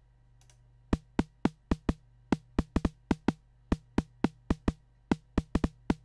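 Synthesised snare drum from FXpansion Tremor playing a fast sequenced pattern of about twenty sharp hits in an uneven rhythm, starting about a second in. Each hit has a quick downward pitch drop. The tuned oscillator tone is pushed up in the attack and the noise is held back there, giving a snappy attack.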